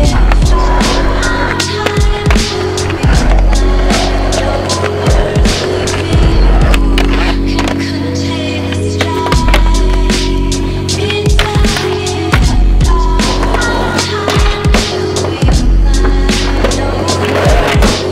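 Skateboard wheels rolling on concrete, with the sharp clacks of boards popping and landing, mixed over a hip-hop beat with heavy bass.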